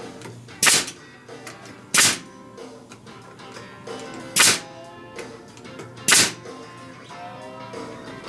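Nail gun firing four separate shots into wood, each a sharp crack, spaced one to two and a half seconds apart.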